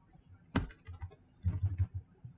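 Computer keyboard typing: a single keystroke about half a second in, then a quick run of several keystrokes near the end.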